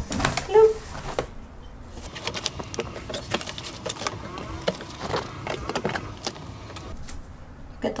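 Wet clothes being handled and dropped into the plastic spin-dryer basket of a twin-tub portable washer: soft rustling with many small clicks and knocks against the plastic tubs.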